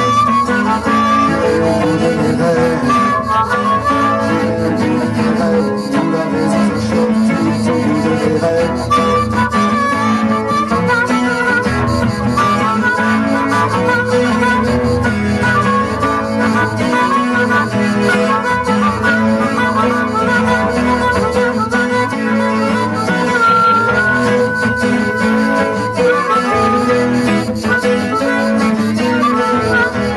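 Harmonica playing an instrumental solo over a strummed acoustic guitar, with one long held high note a little past the middle.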